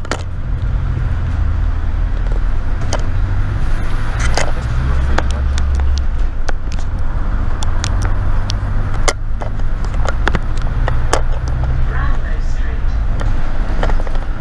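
London double-decker bus engine running with a steady low drone as the bus drives along. Irregular sharp clicks and rattles from the bus body sound throughout.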